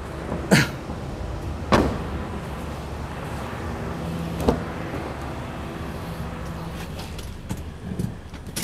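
Three short, sharp knocks from handling a parked car's body and doors, the first about half a second in and the loudest, then others at about two and four and a half seconds, over a steady low hum.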